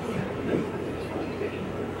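Faint, muffled conversation held away from the microphone, over steady room noise with a low hum.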